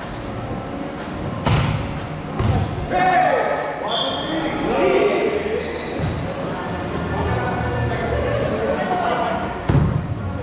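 A volleyball being hit during a rally in a large gym hall: sharp smacks about one and a half and two and a half seconds in, and another near the end, each ringing on in the hall. Players' voices call out in between.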